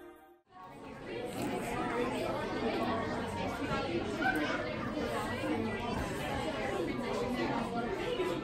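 Music cuts off about half a second in, then a steady hubbub of many overlapping, indistinct voices chattering in a busy room.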